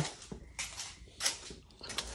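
A few soft knocks and rustles, about half a second and a second and a quarter in: handling noise as things are moved by hand.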